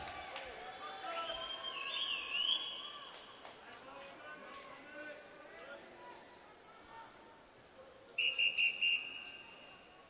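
Voices murmuring in a large echoing pool hall, then near the end a referee's whistle: four short blasts followed by one long blast, the signal calling the swimmers up onto the starting blocks.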